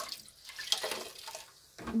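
Tap water running into a sink for hand-washing dishes. The flow stops shortly after the start, followed by a few light clinks and knocks as the dishes are handled.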